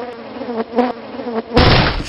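A pitched buzz that sounds in short stop-start bursts, then a loud rush of noise lasting about half a second, starting about one and a half seconds in.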